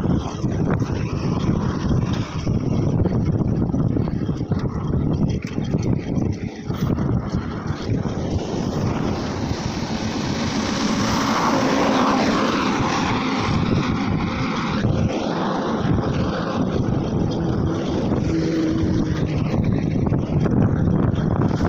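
Wind rumbling and buffeting on a handheld phone microphone while riding a mountain bike along a road, with road and tyre noise mixed in. A louder, fuller rushing sound swells around the middle and fades again.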